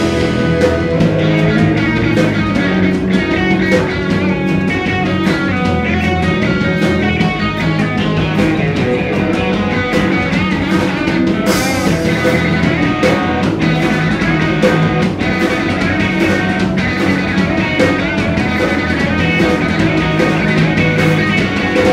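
Live punk rock band playing electric guitars, electric bass and drum kit, with a steady beat of drum and cymbal hits.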